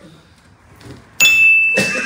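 A single bright bell-like ding, a sound effect, sounds suddenly about a second in after a short quiet and rings on as one steady high tone. Just before the end a hip-hop jingle with voices starts under it.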